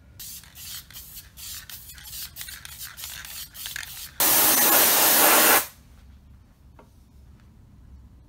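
Aerosol spray can of Krylon Rust Tough enamel paint: a few seconds of light rattling clicks as the can is handled, then one loud hissing spray burst of about a second and a half that stops sharply.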